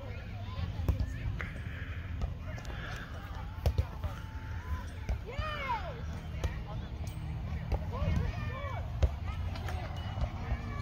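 A playground ball kicked about in a human-foosball pen: a few scattered thuds and knocks, with children's voices calling out now and then over a steady low rumble.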